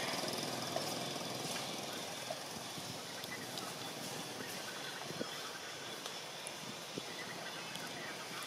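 Steady outdoor forest background hiss with scattered faint clicks and ticks, and no clear animal calls.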